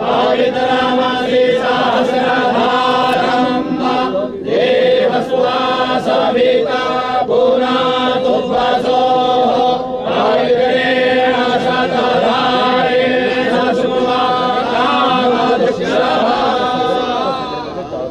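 Group of priests chanting Vedic Sanskrit mantras together in a steady, droning unison during a yajna fire offering. The chant eases off near the end.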